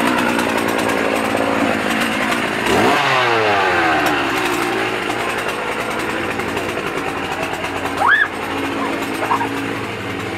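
A small engine revving, its pitch falling and then dropping and climbing again about three seconds in, over a dense noisy din. A brief high rising squeal comes about eight seconds in.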